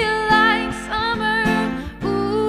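A woman singing live to her own strummed acoustic guitar, played with a capo. She holds long sung notes over steady strokes, and the voice breaks off briefly near the end.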